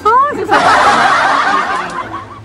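A woman's brief voiced exclamation, then a long breathy, hissing snicker, stifled behind her hand and face mask.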